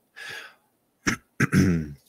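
A man takes a short breath, then clears his throat in the last second.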